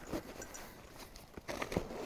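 Faint rustling of the nylon backpack's fabric and straps being handled as the pack is opened out, with a few light clicks.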